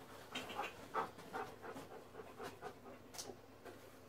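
A dog panting softly: a quick run of short breaths, about three a second, fading away near the end.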